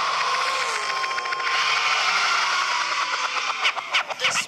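Electronic noise sweep in a dance-pop backing track: a wash of noise with a tone that falls slowly in pitch across the break, with a brief steady tone early on. Sharp hits come back near the end as the beat returns.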